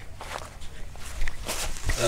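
Rustling, footsteps and handling knocks as a microphone is carried closer, with the loudest knock a little over a second in.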